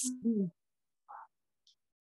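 A person's voice trailing off with a falling pitch in the first half second, then dead silence, broken only by a faint short blip about a second in.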